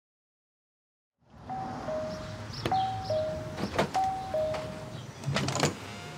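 Two-tone ding-dong doorbell chime, a higher note falling to a lower one, rung three times in a row. It starts after about a second of silence, with a few sharp clicks between the chimes and a thump near the end.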